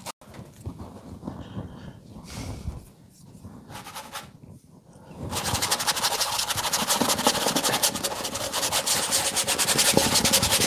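Stiff paintbrush scrubbing oil paint onto a stretched canvas: a few short scrapes at first, then rapid back-and-forth strokes from about five seconds in.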